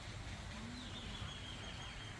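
Faint outdoor ambience: a low rumble under a quiet hiss, with a thin high tone that sets in just under a second in and drifts slightly downward.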